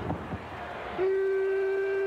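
A long, steady horn-like toot at one unchanging pitch, starting about a second in and held for over a second. It is the Tugboat's signature tugboat-horn toot.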